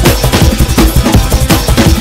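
Electronic dance track playing at full level: a fast, busy drum beat over heavy bass.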